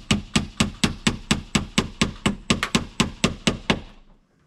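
A hammer striking nails in quick, even blows, about four a second, stopping just before the end.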